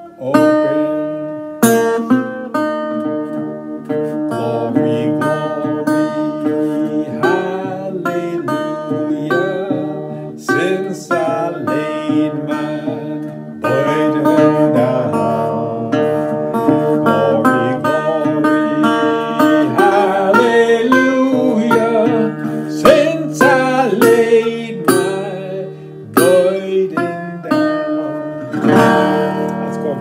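Steel-bodied resonator guitar in open D tuning, fingerpicked: a thumbed low D bass drone under a single-note melody picked on the higher strings, with notes ringing on steadily.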